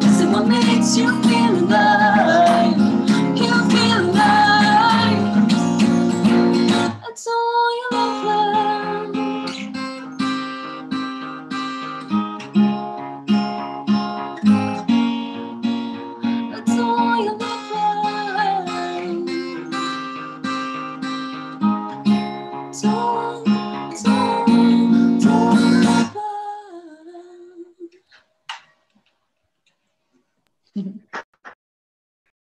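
Acoustic guitar strummed with two voices singing. About seven seconds in the strumming breaks off briefly, then a quieter, rhythmic picked passage follows. The song ends about 26 seconds in, and the last notes die away to near silence.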